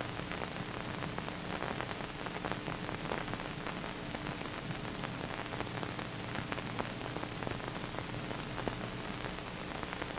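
Steady hiss with faint scattered crackle and a faint low hum: the background noise of an old film soundtrack, with no distinct sound events.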